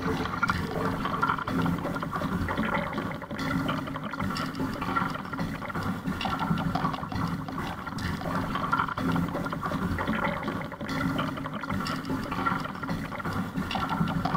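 Water sloshing and lapping against a kayak's hull in choppy water, picked up close from the boat, with irregular louder splashes every second or two.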